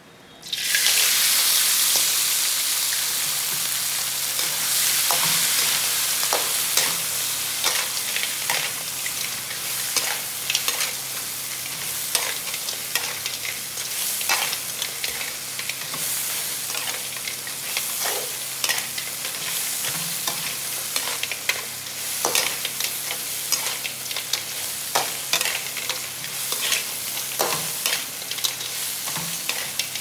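Small whole crabs hitting a hot wok with a sudden loud sizzle about half a second in, then frying while being stirred. The sizzle is loudest at the start, then settles into a steady fry with frequent crackles and clatters of shells against the wok.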